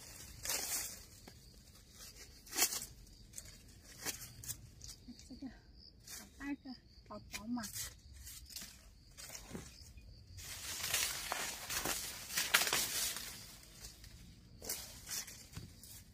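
Dry corn stalks and papery leaves rustling and crackling as ears of corn are snapped off by hand, in a string of short tearing crackles with a longer run of rustling about two-thirds of the way through.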